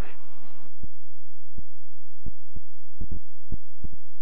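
A light aircraft's engine during the takeoff run, heard as a low steady hum through the cockpit intercom feed. Irregular sharp clicks come through over it. About halfway through, a faint tone rises slowly and then holds.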